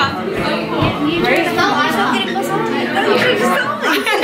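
Several people talking over one another: party chatter with no single voice standing out.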